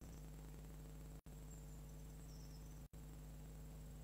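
Near silence: a low steady electrical hum with faint hiss, which cuts out briefly about a second in and again about three seconds in.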